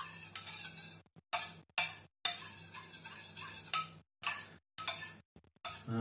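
Metal spoon stirring in a small stainless steel bowl, scraping and clinking against its sides at irregular moments.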